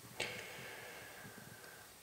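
Quiet room tone with one faint, short click about a quarter of a second in, followed by a soft hiss that fades away.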